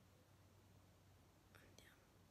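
Near silence: faint room tone with a low steady hum, and a brief faint hiss about three-quarters of the way through.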